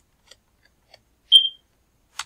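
A single short, high-pitched beep about one and a half seconds in, preceded by a couple of faint clicks.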